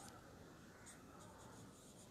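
Faint scratch and squeak of a marker writing on a whiteboard, in a few short strokes.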